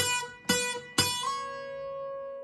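Guitar's first (high E) string plucked three times at the seventh fret, about half a second apart; the third note slides up to the ninth fret and rings on.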